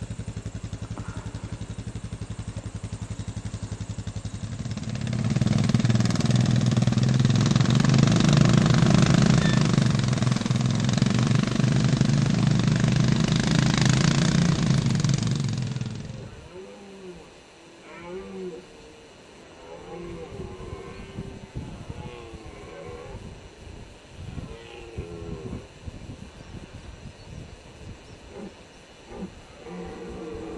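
An engine running steadily, growing louder about five seconds in and cutting off about sixteen seconds in. After that come quieter, intermittent short pitched sounds.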